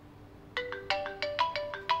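Mobile phone ringtone: a quick melody of bright, chiming notes that starts about half a second in and repeats its short phrase.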